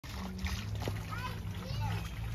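Voices some way off, a child's among them, calling over the sound of splashing water.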